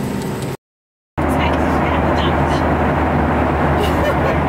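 Shop background noise, cut off suddenly by about half a second of dead silence, then the steady, loud, deep cabin noise of a jet airliner in flight.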